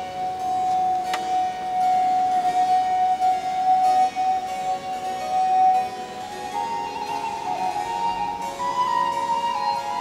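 Baroque transverse flute (traverso) playing with harpsichord accompaniment. The flute holds one long note for about the first six seconds, then moves higher in shorter notes.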